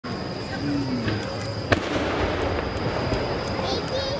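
A single sharp report about halfway through the first two seconds: the mortar launch of a No. 7 (about 21 cm) aerial firework shell, whose rising trail follows. Crowd voices murmur underneath, with a steady high tone throughout.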